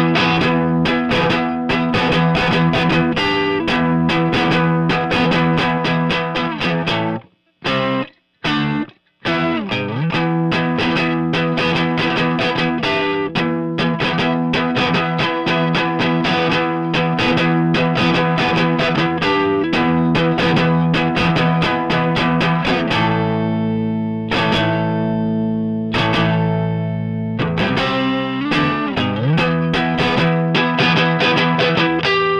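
Distorted electric guitar track playing fast picked chords, with two brief stops about seven to nine seconds in and a held, ringing chord near the end. It runs through the Crane Song Peacock vinyl-emulation plugin, switched out of bypass and between its Rich and Deep color settings, which makes the harsh, aggressive high frequencies less harsh.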